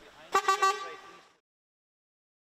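A short vehicle horn toot, starting sharply about a third of a second in and fading away within about a second, from the departing refrigerated delivery truck.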